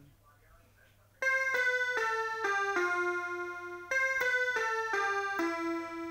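Small electronic keyboard played one note at a time. It starts a little over a second in with a short falling phrase of about six notes ending on a held note, then plays the same phrase again.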